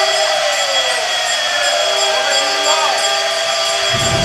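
Conch shell (shankha) blown in one long, steady note held through the whole stretch, as part of Hindu puja worship.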